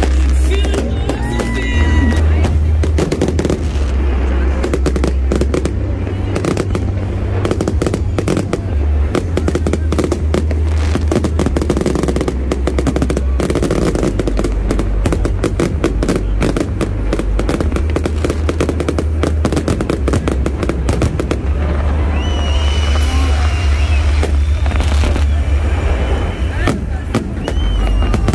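Fireworks display: a dense, unbroken barrage of bangs and crackles from aerial shells and rooftop-launched comets.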